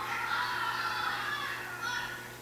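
A class of young children's voices reciting together in a chant, one long phrase that ends near the end, heard as video playback through a loudspeaker in a meeting room.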